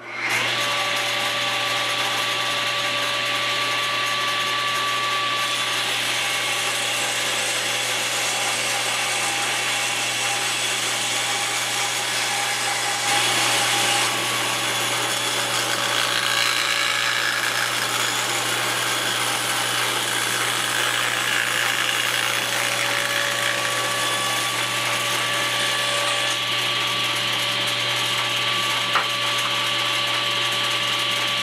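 Table saw switched on and running steadily, ripping a length of 2x4 lengthwise into a narrow strip. It gets a little louder for a moment about halfway through.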